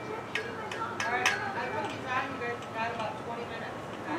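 Other people's voices talking in the background, quieter than the narrator, with a few small clicks.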